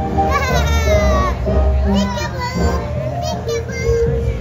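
A child's high-pitched voice squealing over steady music: one long falling squeal about a second long near the start, then shorter ones around the middle and near the end.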